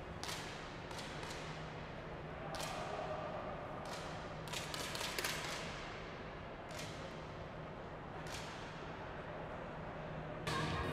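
Air rifles fired along a competition firing line: about nine short, sharp cracks at irregular intervals, each with a brief echo in the hall, over a steady low hum.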